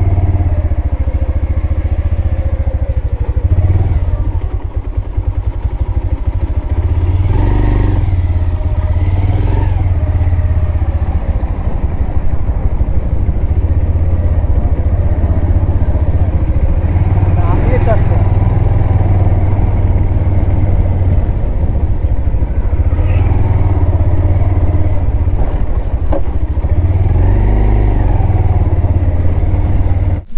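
Motorcycle engine running at low speed on a rough dirt track, with a strong, continuous low rumble. It stops abruptly at a cut near the end.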